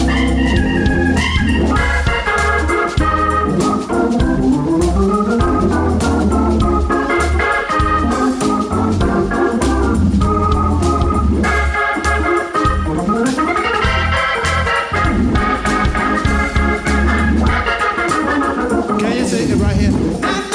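Hammond-style organ playing an instrumental passage: fast runs and sweeping glides over sustained chords, with a deep, steady bass underneath.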